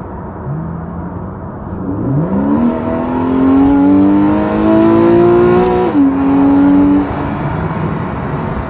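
Porsche 911 (991) Carrera 4's flat-six engine accelerating, heard from inside the cabin. Revs climb from about two seconds in, an upshift drops the pitch at about six seconds, and the throttle is lifted about a second later.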